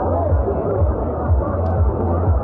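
Party music's bass beat with crowd chatter over it in a crowded hall, muffled and dull, as recorded on a phone.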